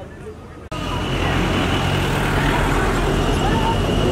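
Road traffic noise with a low engine rumble and background voices, starting abruptly a little under a second in after a short stretch of quieter chatter. A thin steady high tone sounds over it, drops out and comes back.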